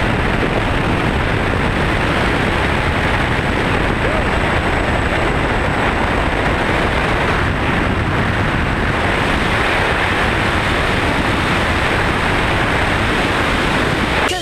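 Loud, steady rush of wind and aircraft engine noise through the open door of a small jump plane in flight, buffeting the camera's microphone.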